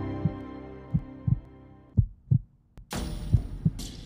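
Heartbeat sound effect: paired low lub-dub thumps about once a second, over a music chord that fades out. Near the end a steady hiss of background noise comes in under the beats.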